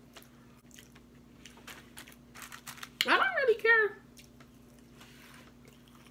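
Crisp clicks of someone chewing a fried, breaded shrimp with the mouth close to the microphone, and a short voiced vocal sound about three seconds in.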